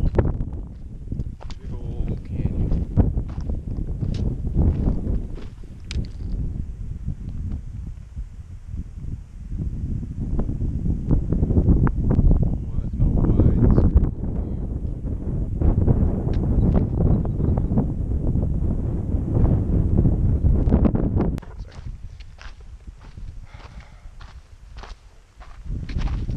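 Wind buffeting a camera microphone: a loud, gusting low rumble that swells and eases, dropping away about 21 seconds in and returning near the end, with scattered small clicks and crunches.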